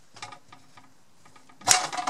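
Mixer gears and a steel shaft in an aluminium gearbox housing, clicking as they are worked down to lock together. A few light clicks come first, then a sharp clack and a short rattle near the end.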